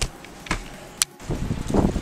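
Handling noise from a self-held camera: a knock at the start, another about half a second in, and a sharp click about a second in, followed by a brief dropout and then wind rumbling on the microphone.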